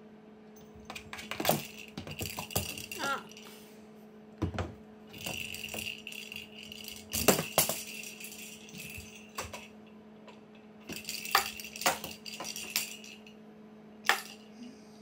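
A cat batting at a cardboard scratcher toy box with balls inside: irregular bursts of rattling, clicking and knocking as balls roll and strike inside the box and the paw knocks the box and its plastic hole rings. The rings get pried loose along the way. A steady low hum runs underneath.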